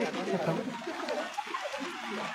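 Several people talking at once in a crowd, a low jumble of overlapping men's voices.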